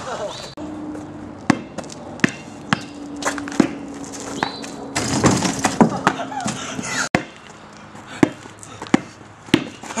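A basketball being dribbled and bounced on a hard court during a one-on-one game: sharp thuds, roughly one every half second to a second, with some voices mixed in.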